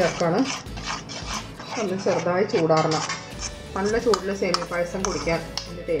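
Metal spoon stirring semiya payasam in a metal pan, clinking and scraping against its sides, with a voice and background music over it.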